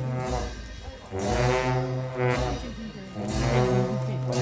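Tibetan monastery ritual music for a cham masked dance: long dungchen horns sound deep, held notes in phrases about a second long, with a cymbal crash at the start of each phrase.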